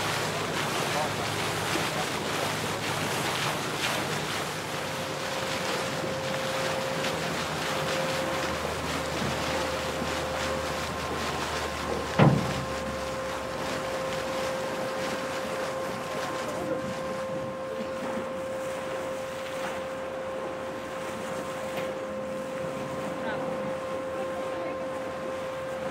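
Wind and water rushing past a moving boat, with wind buffeting the microphone. A steady hum comes in about a fifth of the way through, and a single sharp thump sounds about halfway.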